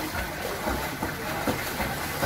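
Swimming-pool ambience: water splashing from swimmers kicking on kickboards, with faint distant voices and a low rumble underneath.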